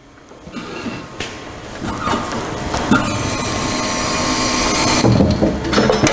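Manual drum depalletiser being wheeled forward with a loaded drum: a steady rolling, rattling noise from its castors and steel frame, with a few knocks near the end.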